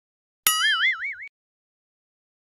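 Cartoon 'boing' sound effect: a click about half a second in, then a springy, wobbling tone that lasts under a second and stops.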